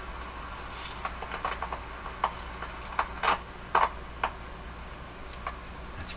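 Irregular crackles and pops over a steady hum: the Stark Model 10-A RF signal generator's output heard through a software-defined radio receiver, crackling like lightning static. The crackling is put down to a dirty switch in the generator.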